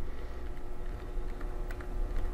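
Faint, scattered small clicks of a small Phillips screwdriver working the screw that holds an M.2 NVMe SSD into a laptop, over a low steady hum.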